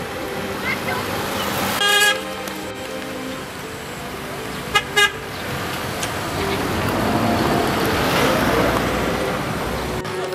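Car horn honking: one longer toot about two seconds in, then two short toots close together about five seconds in. After that, a car passes close by with a rising sound of engine and tyres.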